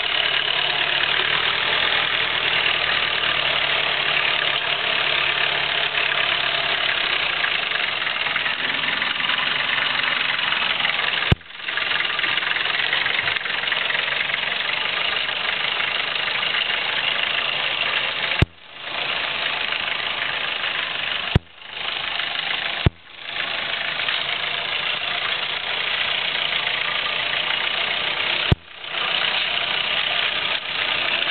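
Jeep engine running at low revs as the vehicle creeps forward on a rough, overgrown trail, under a steady hiss. Five sharp clicks break in, each followed by the sound dropping out for a moment and fading back in.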